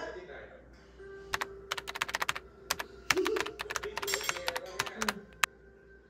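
Keyboard typing clicks, a quick irregular run of keystrokes starting just over a second in and stopping near the end, over soft background music.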